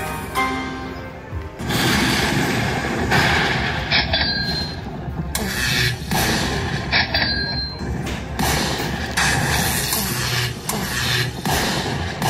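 Aristocrat Eyes of Fortune Lightning Link poker machine playing its win-celebration music and effects while the free-spins win counts up, punctuated by loud crashing hits every second or so.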